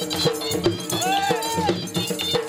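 Live traditional Punjabi music for a dancing horse: dhol drums beating a steady, repeating rhythm, with ringing metallic percussion and a sliding melody line over held tones.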